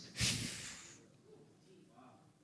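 A man's short, sharp breath close to a handheld microphone, lasting under a second and fading out.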